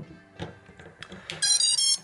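A LiPo battery's XT60 plug going into an FPV racing drone, with a faint knock about half a second in. Near the end comes a quick run of short high beeps stepping in pitch: the startup tones that the ESCs play through the brushless motors as the drone powers up.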